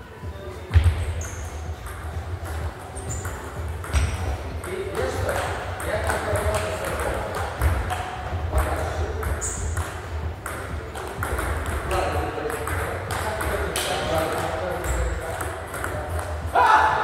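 Table tennis rally: the ball clicking off the rackets and the table in quick succession, with a heavy thump about a second in.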